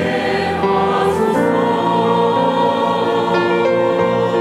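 Church choir singing sustained chords with a small orchestra accompanying.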